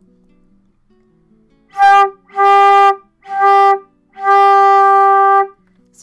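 Silver concert flute played with an over-squeezed embouchure: four notes on the same pitch, the last held longest, with a tight, pinched and forced tone. This is the compressed sound beginners get from squeezing the lips too much.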